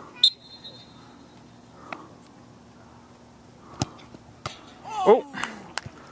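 A referee's whistle gives one short, shrill blast just after the start, signalling a penalty kick. About four seconds in comes a sharp thump as the ball is struck, followed by a man's exclaimed "Oh" and a few more sharp knocks.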